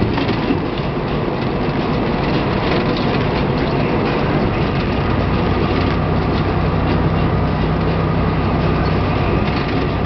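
Semi truck cruising at highway speed, heard from inside the cab: a steady diesel engine drone under constant tyre and road noise. The low engine hum grows more distinct about halfway through.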